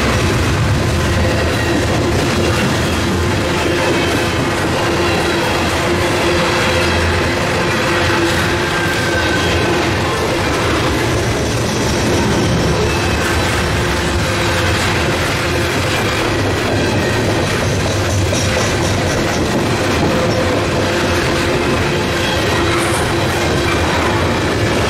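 Steel-wheeled CSX coal cars rolling past close by: a steady loud rumble and clatter of wheels over the rails, with faint wheel squeals now and then.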